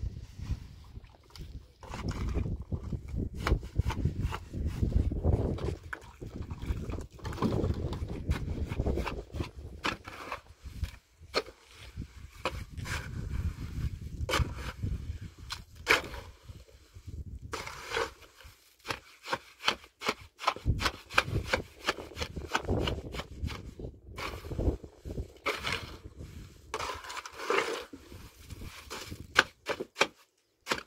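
Water poured from a plastic jerrycan onto dry cement mix in a metal basin. Then a shovel mixes the mortar, scraping and knocking against the basin in many short, irregular strokes.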